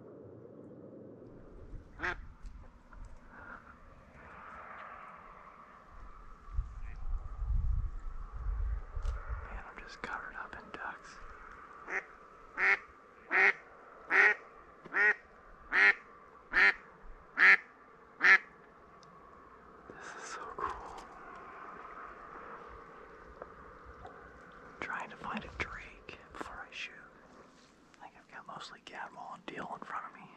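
Ducks quacking on the marsh: soft calls and chatter throughout, with a run of about ten loud, evenly spaced quacks, about one and a half a second, around the middle. A low rumble comes a few seconds before the quacks.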